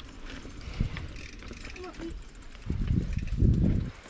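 Mountain bike rolling down a dirt forest trail: low rumbling and knocking from the tyres and frame over the bumpy ground, heaviest in a stretch near the end.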